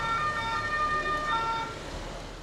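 Ambulance two-tone siren sounding, its held notes alternating between a higher and a lower pitch.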